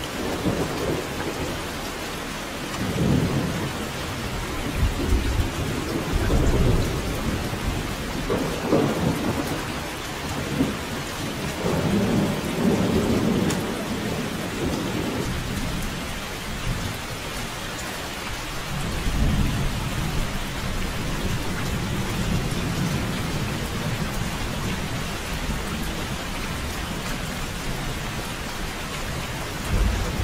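Heavy rain falling steadily in a thunderstorm, with low rolls of thunder that swell and fade several times.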